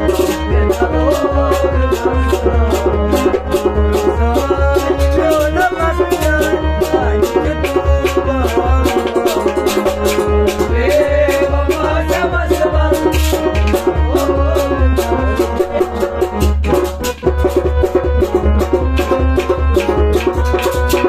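A man singing a Kashmiri sad song to harmonium accompaniment, over a steady, even percussion beat.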